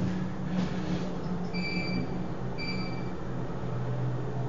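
Elevator car travelling down, a steady low hum of the ride throughout. Two short high electronic beeps sound about a second apart midway through.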